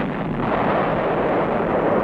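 Sustained rumble of a large demolition explosion: a dense, even noise with no separate blasts in it.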